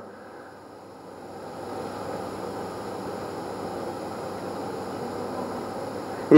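Steady background hiss of room noise picked up by the podium microphone, with no speech. It swells over the first two seconds and then holds level.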